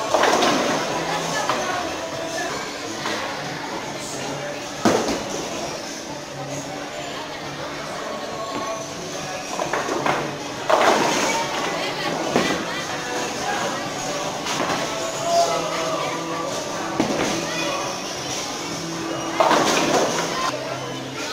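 Tenpin bowling ball striking the pins just after the start, with sharp knocks about five seconds in and around eleven and twelve seconds in as the next ball is thrown and crashes into the pins, and another near the end. Background voices and music of the alley run underneath.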